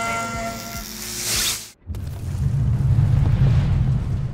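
A steady whine gives way to a rising whoosh that cuts off abruptly. After a beat of silence a deep booming rumble swells up and begins to fade: a cinematic logo sound effect.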